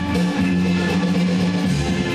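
A live band playing instrumental music with guitar, a moving bass line and drum kit, a steady beat for dancing.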